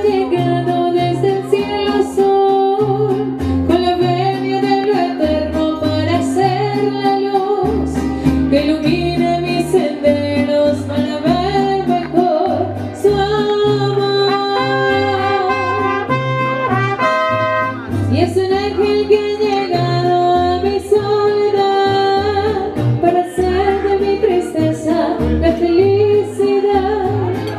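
Mariachi band playing a song: trumpets and guitars over a bass line stepping from note to note, with a voice singing the melody.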